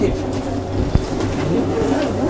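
A steady low hum under a faint background haze, with a single short click about a second in.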